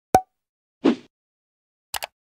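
Short sound effects on an animated logo: a sharp click, a plop about a second in, and another sharp click near the end.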